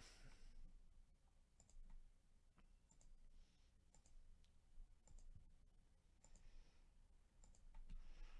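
Faint computer mouse clicks, one every second or so, against near silence: the button being clicked over and over to re-shuffle a list.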